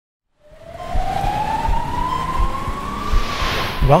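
Title-sequence sound design: a synthesized tone gliding slowly upward, over low thumps about every 0.7 seconds, swelling into a whoosh near the end. A man's voice-over starts just as it ends.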